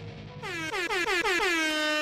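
Intro sound effect: a horn-like tone stuttered in quick repeats, about eight a second, each sliding down in pitch, that run together into one long held note.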